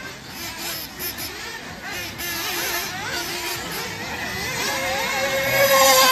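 Radio-controlled off-road cars' motors whining as the cars race round the track, the pitch rising and falling with the throttle. The sound grows louder towards the end, with a held high whine in the last second or so.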